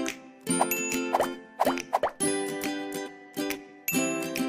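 Short animation jingle: music with several quick rising pop sound effects in the first two seconds, then held chords. The pops go with on-screen buttons popping into view.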